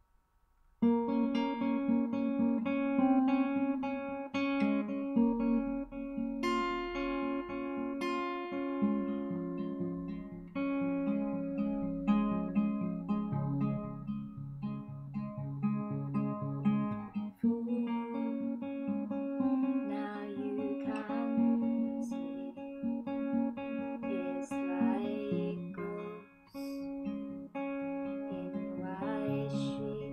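Acoustic guitar with a capo, picked in a steady repeating pattern as the instrumental introduction to a song; it starts about a second in, with a brief drop in level near the end.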